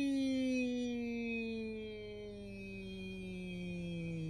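A man's long drawn-out 'yeeee' call, held as one unbroken note that slides slowly down in pitch and fades away.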